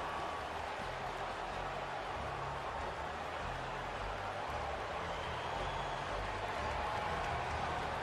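Steady arena crowd noise after a goal in an ice hockey game.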